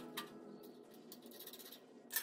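A few faint, scattered clicks and ticks over quiet room tone: metal hardware being handled on an aluminum extrusion frame as bolts are fitted by hand.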